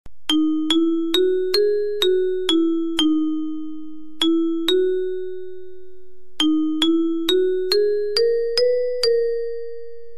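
Indonesian railway station bell chime playing a melody of struck, bell-like notes, about two a second: a phrase of seven notes rising then falling, two more after a short pause, then seven notes climbing in pitch, the last one ringing out.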